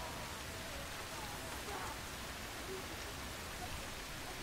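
Steady rain falling, an even hiss with faint murmured voices in the background.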